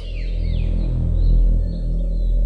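Low, swelling drone of a dramatic background score, rising to a peak over about a second and a half, with faint bird chirps above it.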